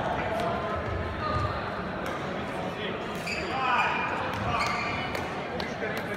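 Badminton play on an indoor court: sharp racket hits on the shuttlecock and short shoe squeaks on the court floor, over voices around a reverberant sports hall.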